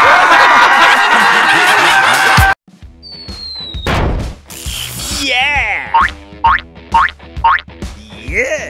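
Cartoon sound effects: a loud, dense sound that cuts off suddenly about two and a half seconds in, then a short falling whistle, a swish, and a run of springy boing sounds with quick rising chirps, about two a second, near the end.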